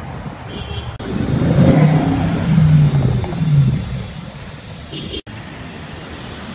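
Bentley Continental GT accelerating past, its engine note swelling loud for about three seconds and then fading as it pulls away.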